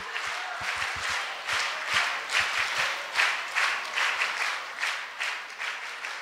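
Audience applauding: many hands clapping unevenly in a continuous patter, dying down a little near the end.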